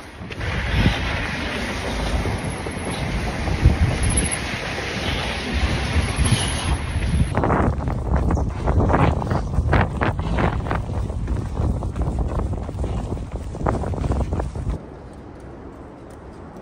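Wind buffeting a handheld phone's microphone while running. About seven seconds in it changes to a quick run of footfalls, two or three a second, with wind underneath, and near the end it drops to a quieter, steady outdoor background.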